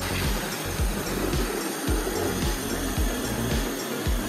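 Cordless reciprocating saw running steadily as its blade cuts through an old wooden board, over background music with a steady beat.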